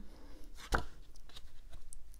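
Handling of an interactive pop-up book's card flaps, with one sharp tap about three-quarters of a second in and a few faint clicks after it.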